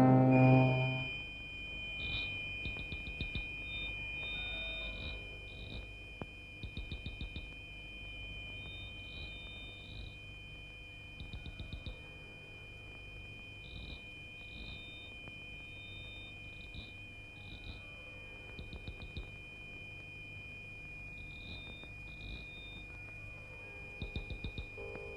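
Crickets chirping in short, rapid pulsed bursts every second or two over a steady high insect trill, the night ambience of a film soundtrack.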